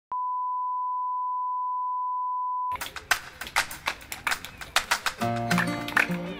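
A steady, unwavering line-up test tone beeps for about two and a half seconds and cuts off abruptly. Music then begins with a quick run of sharp percussive hits, and held pitched notes join in near the end.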